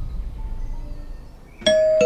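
A low rumbling drone fades down, then near the end a single bright metallic chime note strikes suddenly and rings on without fading.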